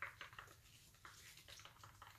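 Near silence, with a few faint clicks and scrapes of a wooden craft stick stirring acrylic pouring paint in a plastic cup.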